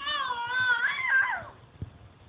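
A baby's single drawn-out, high-pitched squeal lasting about a second and a half, holding steady at first and then wavering up and down in pitch before it stops.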